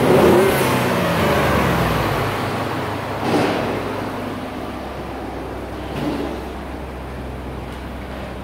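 2015 Ford F-150's 3.5-litre V6 running, heard from the open engine bay, with its revs falling back in the first couple of seconds and then settling to a steady idle. The sound grows fainter toward the end.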